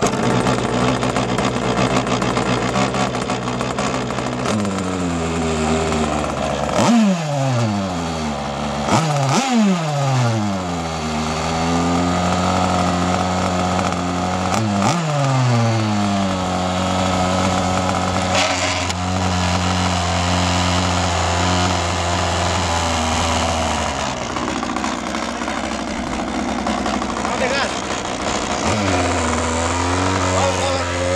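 Quickdraw HT 27 two-stroke petrol engine of an RC racing boat catching right at the start and running at idle. Three quick throttle blips, about 7, 9 and 15 seconds in, rise sharply in pitch and fall back, then it settles at a steady idle.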